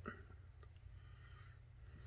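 Near silence: room tone with a low steady hum and two faint ticks.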